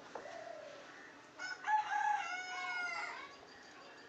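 A rooster crowing once, a single drawn-out call of nearly two seconds that starts about a second and a half in.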